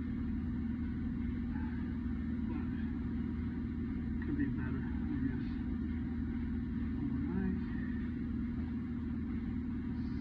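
Steady low hum of running machinery, with faint voices now and then in the background.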